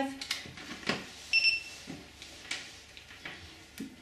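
Clicks and knocks of a USB drive being plugged into an AntiLaser Priority control box while the box is handled, with a single short electronic beep from the unit about a second in.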